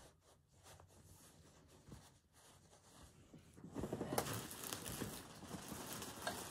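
Rustling of wadding and fabric as stuffing is worked by hand into a stuffed toy's leg: faint scratchy handling at first, then a louder crinkly rustle for the last two seconds or so.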